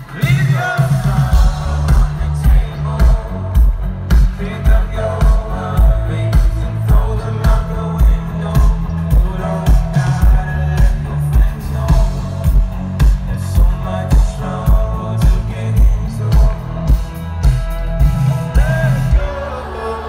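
Live pop/R&B music played loud through a festival PA, led by a heavy bass line and a steady kick-drum beat of about three beats every two seconds. The beat breaks off just before the end.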